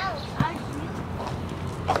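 A child's high voice calling out briefly with a falling pitch, over a few sharp knocks, the first together with the call, another about half a second in and one near the end.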